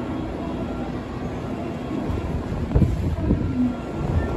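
Tokyu 5050 series electric train standing at a station platform, its equipment giving a steady low hum. A few low thumps come about three seconds in.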